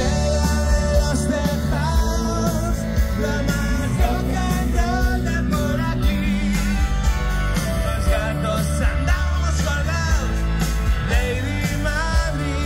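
Live rock band playing loudly, with a steady drum beat, heavy bass and sung vocals, while the crowd around sings along.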